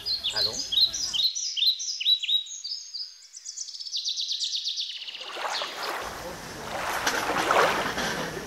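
A songbird singing: a run of evenly repeated, falling chirps that speeds up into a fast trill. It is followed by a rising rushing noise.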